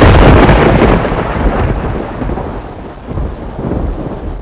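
Thunder sound effect: a loud rumble that starts abruptly and rolls away, fading over several seconds, with a second swell near the end.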